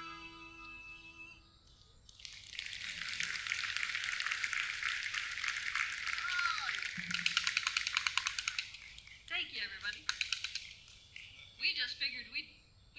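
The last guitar chord of a live band's song rings out and fades, then an audience applauds for about six seconds, the clapping thinning to separate claps near the end. Voices follow in the last few seconds.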